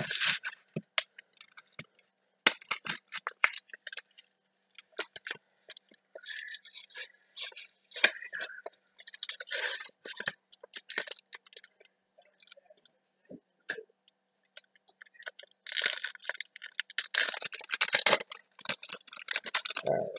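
Yu-Gi-Oh! foil booster pack being handled and torn open: scattered clicks and rustles of packaging, then a few seconds of dense crinkling of the foil wrapper near the end.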